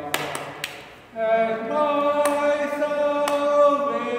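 Voices singing a psalm response as a choir, led by a cantor: a phrase ends and fades in the first second, then after a brief pause a long held note is sung.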